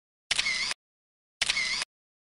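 A camera shutter sound effect, played twice about a second apart, each one short and cut off abruptly.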